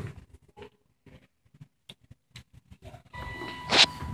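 Faint scattered clicks as the hall call button is pressed. About three seconds in, the arriving Thyssenkrupp traction elevator sounds a steady electronic tone, and a short sharp sound comes just before the end.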